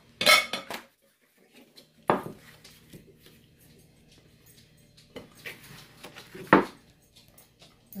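Kitchenware clattering on a counter: three sharp knocks, the first right at the start, the next about two seconds later and the last, loudest, about six and a half seconds in.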